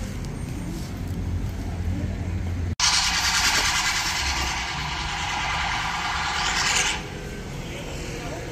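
Low street traffic rumble, broken off abruptly a little under three seconds in. A loud, steady hiss follows for about four seconds, then fades to quieter background.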